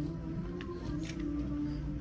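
Background music with sustained notes. Under it come a few faint clicks and scrapes of clothes hangers sliding along a metal store rack as garments are pushed aside.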